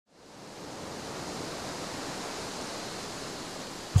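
Ocean surf: a steady wash of waves fading in over the first half second and then holding even.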